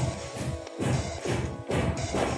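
Building work by workers: a run of irregular knocks and bangs, about half a dozen in two seconds.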